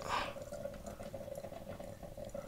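Liquid being poured from a glass coffee carafe into the narrow neck of a plastic bottle: a brief gurgling splash right at the start, then faint sound over a steady low hum.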